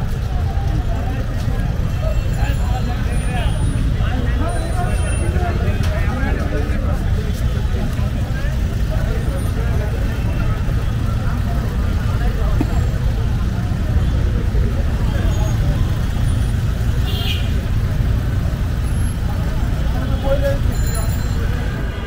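Busy street ambience: a steady low rumble of road traffic with people talking in the background.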